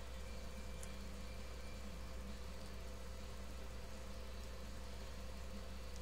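Steady low background hum with a faint hiss, unchanging throughout.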